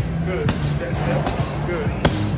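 Medicine balls being passed and caught, with a few sharp slaps and thuds as the balls hit the hands, over background music with a steady bass line.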